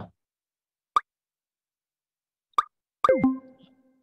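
Button sound effects from an interactive quiz's on-screen number keypad: two short pops as digits are clicked, about a second in and again near the middle. Just after three seconds comes a different effect, a quick falling sweep followed by a ringing tone that fades out.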